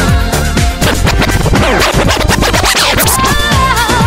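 Hip hop mashup music with DJ record scratching over the beat through the middle, then the synth melody comes back near the end.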